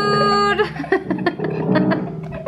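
Keys of an upright piano pressed by a toddler's hands, sounding scattered notes. At the start a voice holds one long note.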